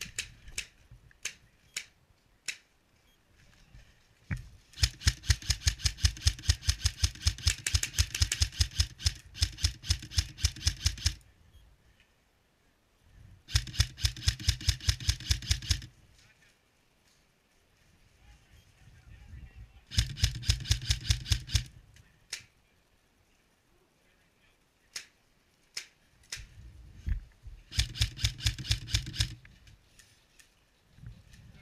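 Airsoft rifle firing long strings of rapid shots, four runs of about two to six seconds each, with a low motor hum under the shots and scattered single shots in between.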